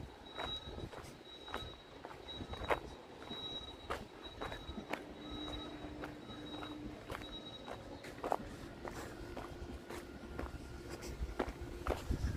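Quiet footsteps of a person walking on a dirt and gravel road, one soft step about every half second to a second.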